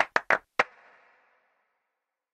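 A short percussive sting of quick, sharp taps, four in the first half-second or so, with a faint ringing tail that dies away by about a second in, then silence.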